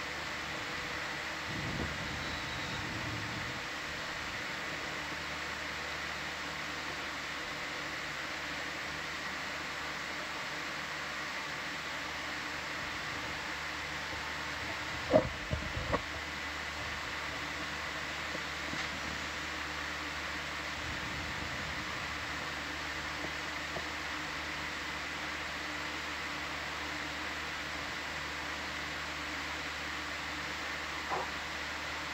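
Steady hiss and electrical hum of control-room equipment and its open audio line, with faint steady tones. Two sharp clicks come about halfway through.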